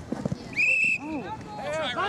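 A referee's whistle gives one short, steady blast about half a second in, followed by shouting voices of players and spectators.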